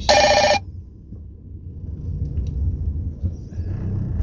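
A short, loud electronic alert tone at the very start, about half a second long and made of several steady pitches, then the low, steady rumble of the car cabin.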